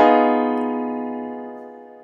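A chord struck once on a digital piano keyboard and left to ring, several notes sounding together and fading steadily over about two seconds.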